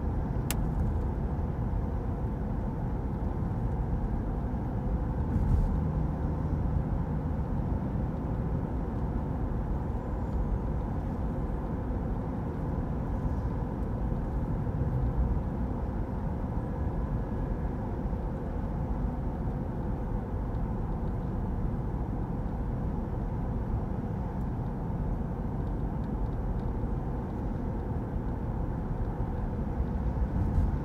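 Steady road and engine noise heard from inside a moving car driving at street speed, an even low rumble throughout, with a single brief click about half a second in.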